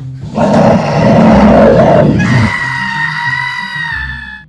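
A person's loud, rough scream starting about a third of a second in, turning into a high, steady shriek a little past halfway that cuts off just after the end. Low bowed-string horror music plays underneath.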